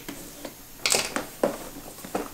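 Cardboard box being handled on a table: a short scraping slide a little before the middle, then two knocks as the box is laid down flat.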